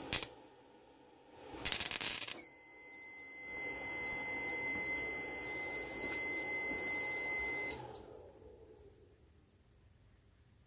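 A cheap MIG welder, fed from a 12 V to 240 V modified sine wave inverter, strikes an arc with a loud crackle for under a second about two seconds in. The inverter then trips and its alarm sounds one steady high beep over a steady noise for about five seconds, cutting off suddenly near eight seconds: it is picking the weld up as a fault, as if it's short circuiting.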